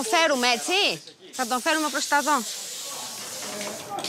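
A person's voice speaking for about two and a half seconds, then a steady hiss.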